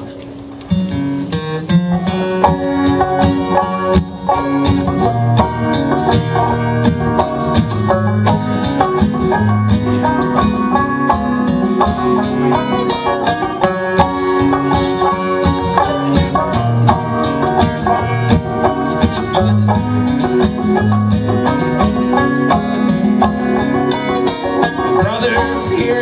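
Live acoustic guitar and banjo playing an instrumental opening together, the banjo picked in quick plucked notes over strummed guitar chords; the music starts about a second in.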